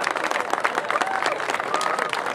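Audience applauding: many hands clapping in a dense, irregular patter, with voices underneath.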